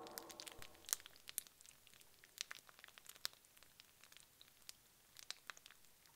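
Faint, sparse crackling: irregular sharp little clicks, a few a second, with the tail of music fading out in the first second.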